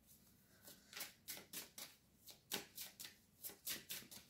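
Deck of oracle cards being shuffled by hand: a quick run of short, soft swishes starting about a second in.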